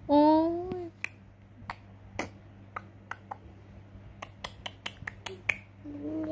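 A short cry of "oi" (ouch), then a run of sharp, irregular clicks that come faster in the second half.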